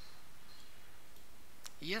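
Steady low hiss of the room and microphone, with a single computer mouse click near the end as a file is dragged onto the upload area.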